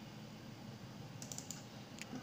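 Computer mouse-button clicks, faint: a quick cluster of about four clicks a little past halfway, then one more at the end, the double-clicks that open a folder window. A low steady hum runs underneath.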